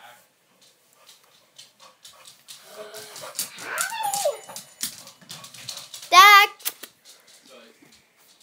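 Rustling and knocking of the camera being handled, with a voice gliding down in pitch, then a loud, short, high cry that wobbles quickly in pitch about six seconds in.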